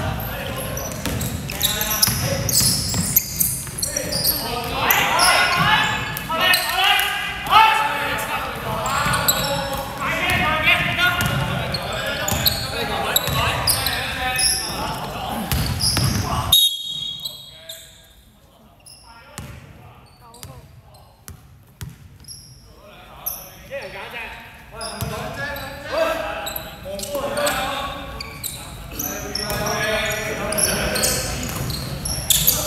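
Indoor basketball game on a hardwood court: a basketball bouncing and players' voices calling out, echoing in a large hall. About halfway through the sound drops suddenly and stays quieter for several seconds, with only scattered knocks, before the voices return.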